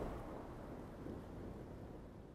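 Faint low hum and hiss with no clear event, fading out near the end.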